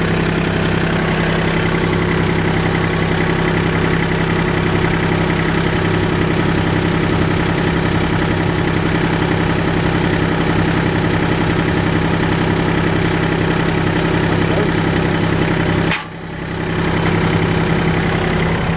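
Kubota three-cylinder diesel engine of a tractor idling steadily. It dips sharply in level about two seconds before the end and comes back within a second.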